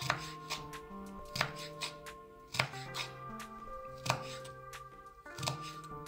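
Kitchen knife dicing red bell pepper on a wooden cutting board: unevenly spaced knife strikes against the board, about two a second, over soft background music.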